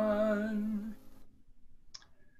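A singing voice holds the last note of a hymn with a slight waver, then fades out about a second in. Near silence follows, with a faint click near the end.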